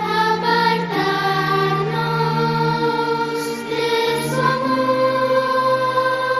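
A choir singing slowly, several voices holding long notes together and moving to new chords every second or two.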